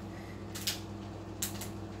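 A dog chewing on a plastic water bottle: two short, faint crinkles about a second apart, over a steady low hum.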